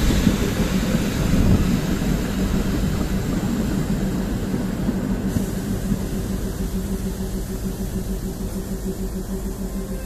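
Indian Railways WDM3-class diesel locomotive and its train running, a steady low rumble with a held engine drone that slowly fades.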